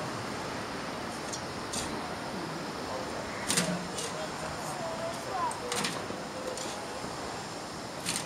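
Spades and forks digging garden soil: short scraping clinks every second or so, the loudest about three and a half and six seconds in, over a steady rush of wind and faint distant voices.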